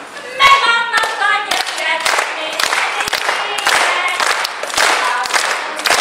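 Women's voices singing a song together, with hands clapping in time, about two claps a second.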